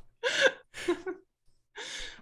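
A person's breathy gasps as laughter dies down: a longer one near the start, a short one about a second in, and another near the end, with quiet between.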